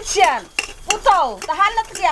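Steel utensils clinking and scraping against each other as they are washed by hand, with a voice in sweeping, exclamatory tones over them.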